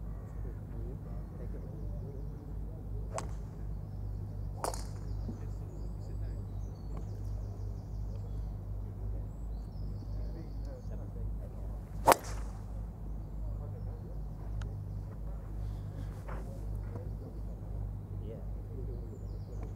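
A golf driver striking a ball once, a single sharp crack about twelve seconds in. Two fainter clicks come earlier, over a steady low rumble.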